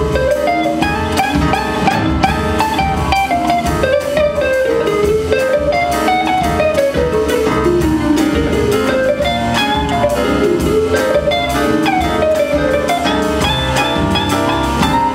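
Jazz big band playing live, with guitar, a saxophone section and drum kit keeping a steady swing beat.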